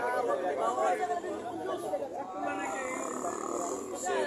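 Background chatter of people talking at once in an open plaza, with no single clear voice. About halfway through, a steady drawn-out tone joins the voices and holds to the end.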